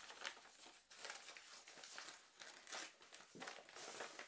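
Paper envelope being torn open by hand: faint crinkling and tearing of the paper.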